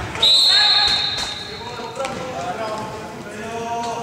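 A referee's whistle gives one sharp, steady high blast of under a second, just after the start, in an echoing sports hall. Voices and a couple of knocks on the wooden floor follow.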